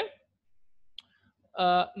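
A man speaking, with a pause of about a second in which a single short click sounds near the middle.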